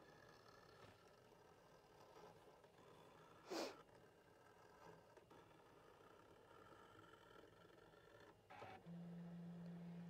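Near silence with the faint whir of a Brother ScanNCut's motors as its auto blade cuts fabric, running slowly at a turned-down speed setting. A brief soft sound comes about three and a half seconds in, and a low steady hum starts near the end.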